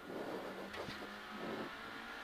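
Suzuki Swift rally car's engine running at fairly steady revs, heard from inside the cabin.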